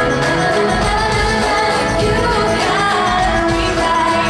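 Live pop music from a full band, with a woman's amplified voice singing over it at a steady, loud level.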